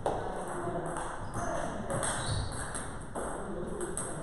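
A table tennis ball bouncing, heard as several light, irregularly spaced clicks.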